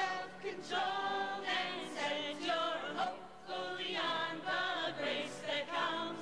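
Music: a group of voices singing together, choir-style.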